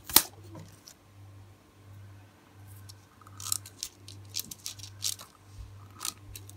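Scissors cutting a sheet of thin metallic nail transfer foil: a sharp click just after the start, then a few short crisp snips and crinkles of the foil in the second half.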